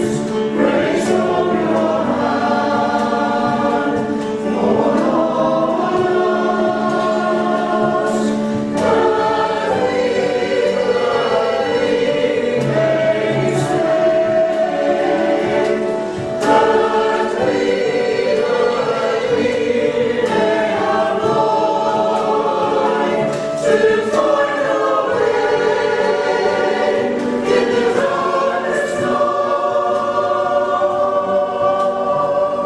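Mixed choir of men's and women's voices (a Salvation Army songster brigade) singing a slow piece in parts, with long held notes.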